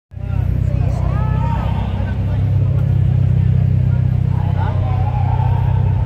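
A car engine idling close by, a loud steady low rumble, with voices talking in the background.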